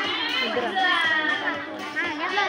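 Several children's voices calling and chattering over each other, with music playing behind them.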